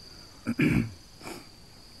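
A short, loud throat-clearing cough about half a second in, with a smaller one shortly after, over a steady high chirring of crickets.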